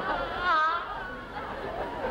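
Studio audience laughing, with a man's wordless vocal sound rising over it about half a second in.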